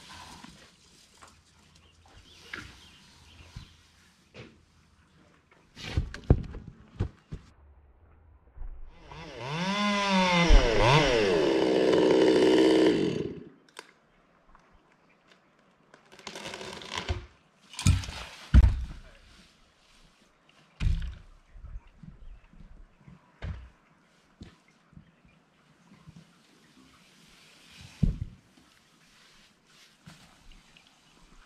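A chainsaw running aloft, revving for about five seconds near the middle, its pitch rising and falling as it cuts into the spar. Several sharp knocks and thumps come before and after it.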